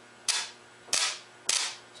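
Three sharp cracks of electrical arcing as the lugs of a short four-gauge cable are touched together across a 12-volt car battery's terminals. Each is a dead short drawing very high current and throwing serious sparks, and each crack dies away within a fraction of a second.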